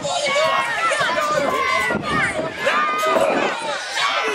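A crowd of spectators, many of them children, shouting and calling out over one another.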